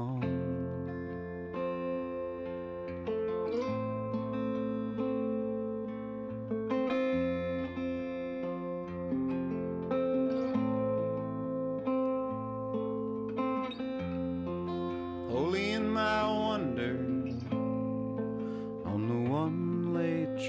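Archtop guitar played fingerstyle in a slow song, held chords ringing over a changing bass note, a guitar interlude between sung lines.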